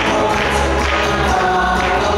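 Cha-cha-cha dance music with singing voices, playing steadily.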